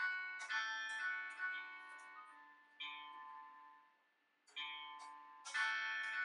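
Chords strummed on a GTar smart guitar in free-play mode, the notes played from its connected iPhone app. About half a dozen strums ring out and fade, with a brief lull about four seconds in. Now and then a strummed string fails to sound, a note the GTar sometimes misses.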